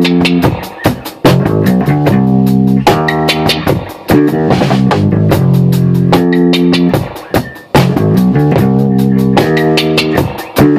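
Live jam: an electric bass guitar plays a repeating funk riff over drums, the phrase breaking off briefly about a second in, again around four seconds in and near the end.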